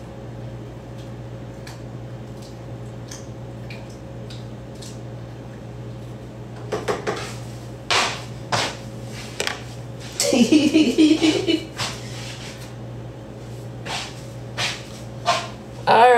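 A large spoon knocking against a pot and kitchen utensils clattering a few times, over a steady low hum. A short stretch of voice comes in the middle.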